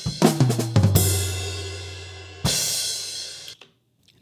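Soloed overhead-microphone track of a multitrack drum-kit recording played back: a few drum hits, then two cymbal crashes ringing out over a low ringing drum tone. Playback cuts off suddenly near the end.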